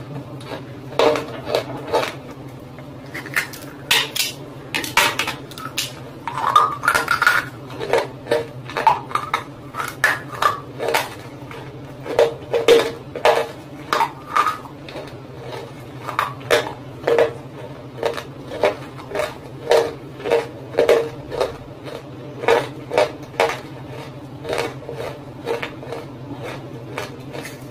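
Brittle roasted clay crunching and cracking close to the microphone: a long, irregular run of sharp clicks and cracks, about one to two a second, over a steady low hum.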